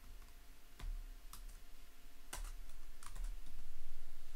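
Typing on a computer keyboard: a handful of separate key clicks spread over a few seconds.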